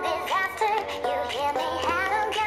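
Background music: a song whose sung melody glides and wavers over instrumental backing.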